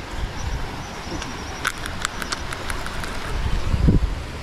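Wind rumbling on the microphone, with a few light clicks around the middle and a brief vocal sound near the end.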